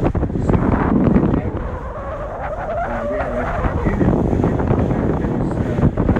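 Steady low rumble of a passenger cruise boat underway, with wind noise on the microphone and faint voices aboard.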